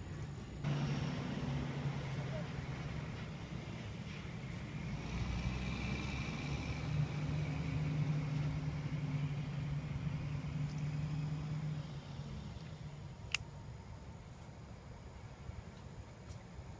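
Motor vehicle engine running nearby, a steady low hum that starts abruptly about a second in, grows louder toward the middle and fades out about three-quarters of the way through. A single sharp click follows shortly after.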